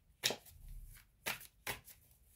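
Tarot cards being handled off the table: three short, quiet card rustles.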